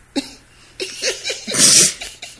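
A person's short vocal noises, then a loud breathy burst about a second and a half in, the loudest sound here.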